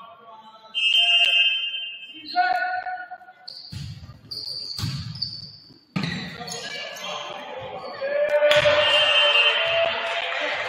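A volleyball rally in a gym: sneakers squeaking on the court, the ball struck with a sharp smack about five seconds in, and players and spectators shouting and cheering loudly in the last second and a half as the point is won.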